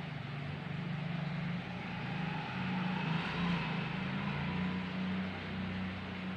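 Steady low engine hum that swells about halfway through and then eases off, with a faint higher whine rising over it as it swells.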